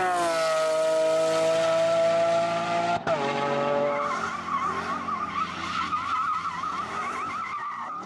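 High-revving sports car engine held at high revs, breaking off sharply about three seconds in. Then tyres squeal with a wavering pitch as the rear wheels spin under power in a smoky burnout or donut, with the engine running underneath.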